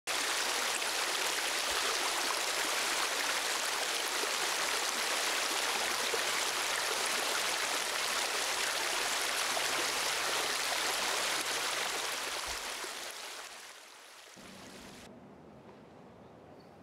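Fast-flowing stream water rushing steadily, fading out over the last few seconds.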